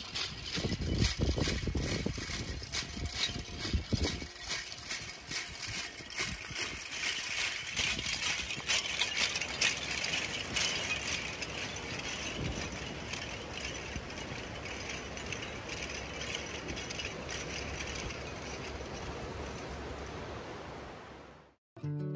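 Rolled metal cones on a jingle dress clinking and rattling together as the wearer moves, with many rapid clicks, fading out shortly before the end.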